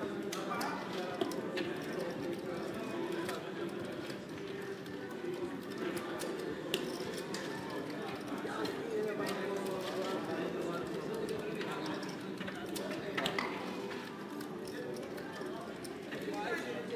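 Indistinct background voices chattering steadily, with scattered sharp clicks of casino chips being picked up and stacked on the table.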